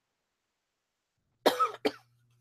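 Near silence, then a person coughs twice in quick succession near the end, the second cough shorter than the first.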